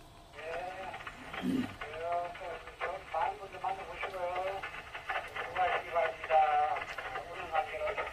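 A voice coming over an amateur radio transceiver's speaker, thin and narrow-band. It is a station answering on the air, starting about half a second in.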